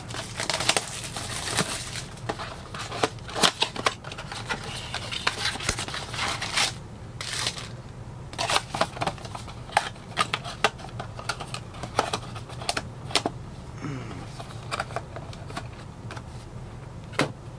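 Hands opening a cardboard trading-card blaster box: an irregular run of crinkling, tearing and cardboard rustling, with many sharp clicks and crackles.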